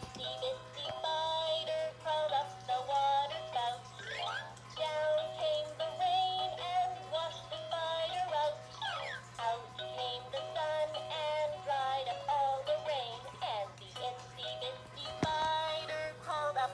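Battery-powered plush baby toy playing a children's song in a synthetic singing voice, a stepping melody that runs on throughout over a steady low hum; its batteries are running low.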